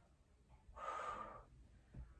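A woman's single breath of exertion, lasting under a second, about midway through, while she holds a side plank.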